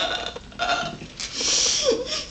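A woman crying: short, gulping sobs every half second or so, then a long breathy gasp in the second half.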